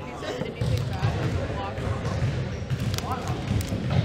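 Irregular dull thumps repeating every half second or so, with faint voices chattering in the background.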